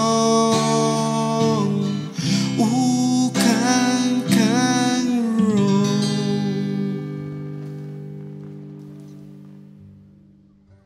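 The closing bars of a song: acoustic guitar with a sung vocal line over it. About halfway through, the final chord is held and the music fades out steadily.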